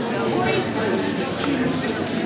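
A damp sponge wiped across a lithographic stone, a few hissy swishes in the second half, wetting the bare stone so it will refuse the ink. Voices murmur underneath.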